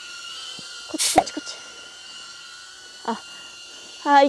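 Propellers of a HOVERAir X1 Smart palm-sized camera drone in flight, a steady high whine at a few fixed pitches. A short burst of noise comes about a second in, and a brief fainter sound near three seconds.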